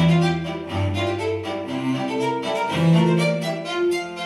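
Background music: bowed strings, violin and cello, playing slow held notes.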